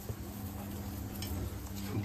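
A paratha sizzling in desi ghee on a flat iron tawa, with a steel spoon rubbing the ghee over its surface. It makes a steady, even hiss with a few faint ticks.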